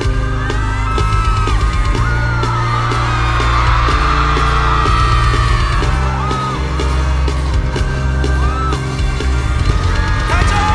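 Loud live concert music with a heavy, steady bass line, with voices yelling and whooping over it.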